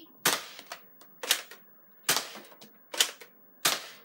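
Nerf Dual Strike spring blaster being primed and test-fired with Elite darts: a series of sharp plastic snaps and clicks, about five loud ones with softer clicks between.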